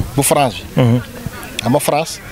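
A man talking into a close handheld microphone.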